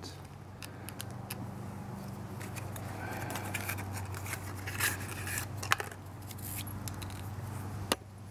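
A cardboard spark plug box being handled and opened and the new spark plug taken out, with rustling and scattered light clicks over a steady low hum.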